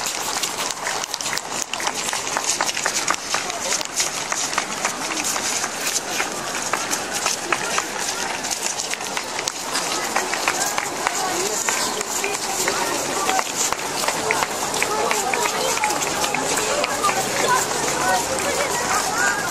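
Footsteps of a column of soldiers marching on stone paving: a dense run of many boot strikes, with crowd voices and chatter around them.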